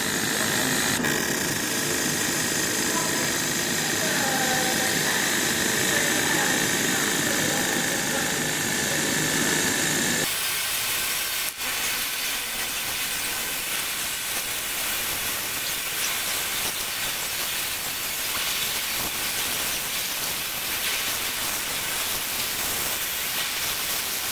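Steady hissing machine noise from a laser engraving setup working on acrylic, with air and fume extraction running. About ten seconds in the low rumble cuts out abruptly, leaving a thinner, higher hiss.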